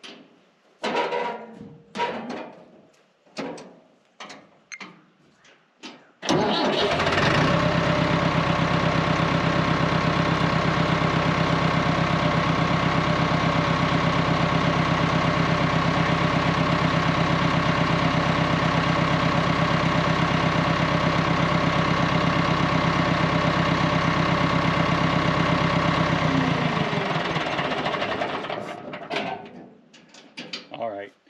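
Massey Ferguson 265 tractor's diesel engine catching about six seconds in and then idling steadily with an even pulse for about twenty seconds before it is shut off and runs down. A few short knocks come before it starts.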